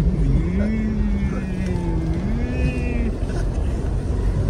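Car driving on a country road, heard from inside the cabin: a steady low rumble of engine and tyres. Over it, a man's voice draws out one long note, then a second slightly higher one, and breaks off about three seconds in.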